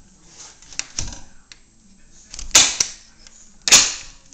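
A few sharp knocks and clicks on a hard surface in a small room, two of them much louder, one past halfway and one near the end.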